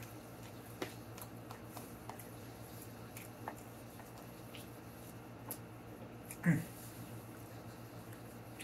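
Faint clicks and taps of a utensil against a plastic takeout bowl, with chewing, while someone eats. About six and a half seconds in there is one short, louder vocal sound that falls in pitch.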